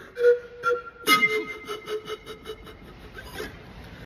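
Music with a flute-like wind instrument: two short notes, then about a second in a quick run of rapidly repeated notes that gradually fades away.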